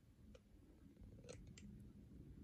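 Near silence: faint room tone with a few small clicks, one about a third of a second in and two more close together past the middle.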